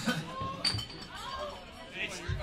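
Crowd chatter in a club, with one sharp clink that rings briefly about a third of the way in.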